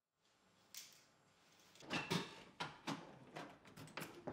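A door being unlocked and opened: one click just under a second in, then a run of irregular clicks and knocks from about two seconds in.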